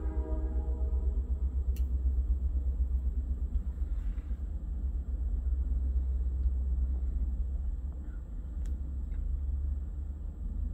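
Freight train of covered hopper cars rolling past with a steady low rumble. The last of the train's horn dies away in the first moment, and there are a couple of faint clicks.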